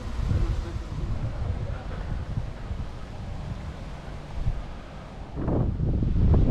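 Wind buffeting the microphone as a low, gusty rumble, growing louder in the last second.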